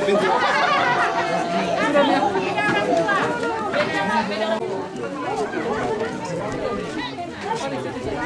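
Several people talking at once: steady overlapping chatter of a gathered group.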